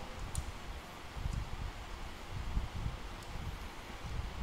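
Low, uneven handling rumble with a few faint light ticks as fishing-rod tip sections are shifted in the hand.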